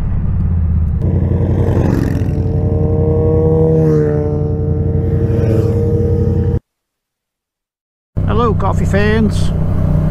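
Motorcycle engine running while riding along the road, its note rising and falling slightly; it cuts off abruptly about six and a half seconds in and, after a second and a half of silence, resumes.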